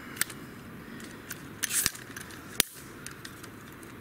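Scattered small clicks and crackles over a steady low hiss, with a sharp click just before the middle and another a little after it.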